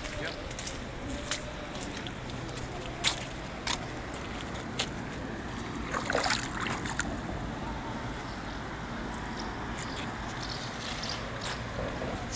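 Fast-flowing Elbe floodwater: a steady rushing wash. About six seconds in, a hand dipped into the water gives a short burst of splashing.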